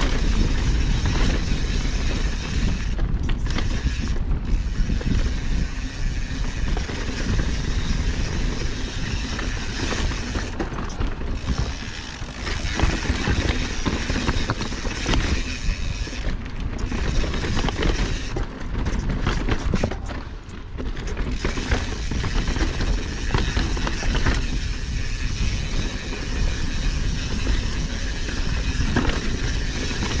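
Mountain bike being ridden over a rocky dirt trail: wind rushing over the camera microphone, with tyres on dirt and rock and frequent clicks and rattles from the bike over bumps. The noise eases off briefly several times.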